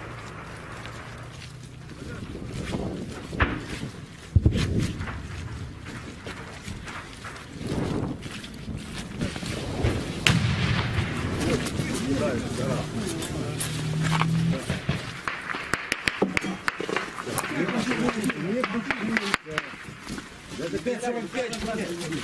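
Indistinct voices over the knocks and rustle of a handheld camera being carried on the move, with a low steady hum through the first part and several sharp knocks, the loudest about four and ten seconds in.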